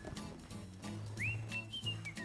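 Soft background music with low sustained tones. About a second in, a high whistled note slides up and then holds.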